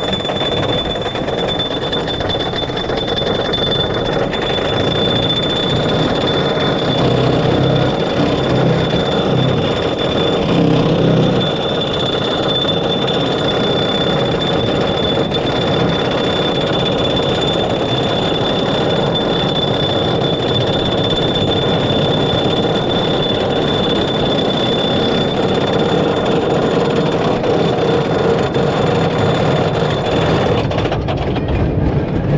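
Wooden roller coaster train being hauled up its chain lift hill: a steady mechanical rumble with a thin, high whine held throughout.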